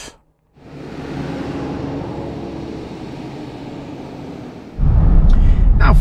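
Land Rover Defender 130 heard from inside the cabin: a steady, moderate engine and road hum sets in about half a second in. At about five seconds it jumps suddenly to a much louder low rumble as the car drives on tarmac.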